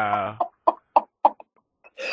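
A long held low note with a steady pitch cuts off, then four short clucking calls follow, about three a second.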